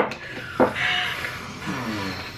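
A sharp click at the start, then soft breathy vocal sounds and a brief low murmur of a woman's voice near the end.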